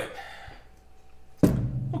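Glass beer bottle being handled: quiet at first, then one sharp knock about one and a half seconds in, followed by a low rumble.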